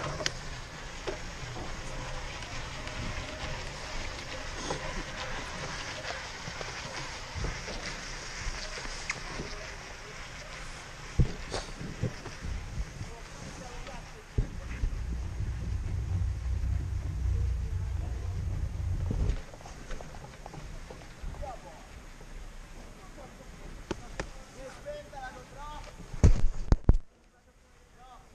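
Chairlift ride heard from a helmet camera: a steady running noise with scattered clicks, a low rumble for a few seconds in the middle, and a few loud clunks shortly before the end.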